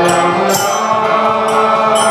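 Devotional chanting over a sustained harmonium, with hand cymbals struck and ringing about once a second and hand-drum strokes underneath.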